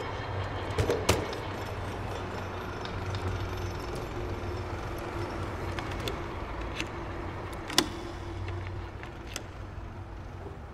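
Steady low hum of street traffic, with two sharp clicks about a second in and a louder single click about eight seconds in.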